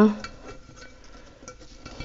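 Faint scattered clicks and light scraping as hands work a thin dogwood twig into a glass vase, the twig brushing and tapping against the glass.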